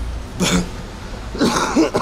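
A man's short laugh and cough, two brief bursts about a second apart, the second a rough cough into his gloved hand.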